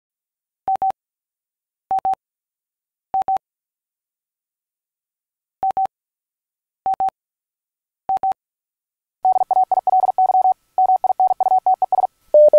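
Morse code sent as a single steady beep tone: two groups of three short double beeps, then from about nine seconds in a fast, continuous run of keyed dots and dashes.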